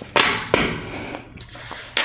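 Tarot cards being swept up and slid across a marble tabletop: two quick swishes in the first half-second that fade away, then a light click near the end.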